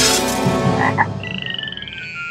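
Cartoon frog sound effect: a short croak about a second in, followed by a warbling high tone over a steadily falling whistle-like glide as the frog leaps.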